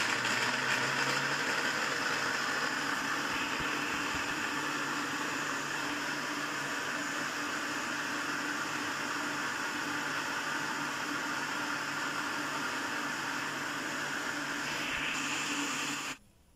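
Electric countertop blender running steadily at speed, blending carrot pulp in its jar, then cutting off suddenly at the end.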